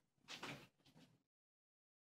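Near silence: a brief faint handling noise about half a second in, then dead digital silence as the recording stops.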